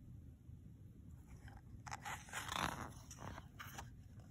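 A page of a paper picture book being turned by hand: a short rustle of paper with a few crisp clicks, starting about two seconds in.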